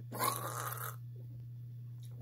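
A man's short, noisy vocal sound of disgust at the taste of a drink, lasting under a second before it stops.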